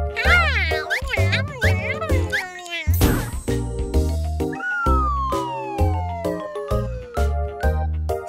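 Children's song backing music with a steady bouncing bass beat, over which a cartoon cat meows in a few short, bending calls in the first two seconds. About three seconds in comes a short bright whooshing burst, and a long, smoothly falling tone follows near the middle.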